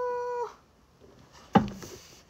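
A young woman's wordless voice held on one steady high note, a whine-like groan as she stretches, ending about half a second in. About a second and a half in there is a single sharp knock, the loudest sound.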